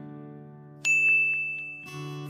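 Subscribe-button notification 'ding' sound effect: a sharp click about halfway through, then one high bell-like tone that rings and fades, over soft guitar background music.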